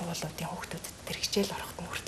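Speech only: a woman talking in Mongolian in a conversational interview.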